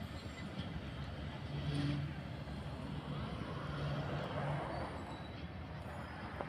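Passenger train rolling away down the line: a steady low rumble of wheels on the track.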